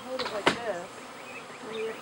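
Honey bee swarm buzzing in the air around its cluster, with individual bees passing close by in buzzes that rise and fall in pitch. A sharp click about half a second in is the loudest sound.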